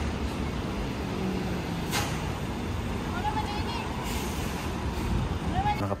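Steady low rumble of city street traffic, with a short sharp sound about two seconds in and faint voices of passers-by.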